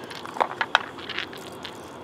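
Hands rinsing garnets in soapy water over a rock tumbler barrel: a few small splashes, drips and clicks.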